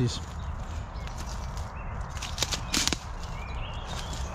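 Footsteps on dry leaf litter and twigs, with a couple of sharp snaps a little past halfway, over a steady low rumble on the microphone. Faint bird chirps come in the second half.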